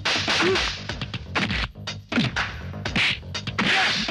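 Film fight-scene sound effects: a rapid series of sharp whooshing punch and slap hits, about one to two a second.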